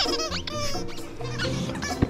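Squeakers inside a giant plush snake dog toy squeaking repeatedly as a husky and a dachshund bite and tug on it, loudest near the start.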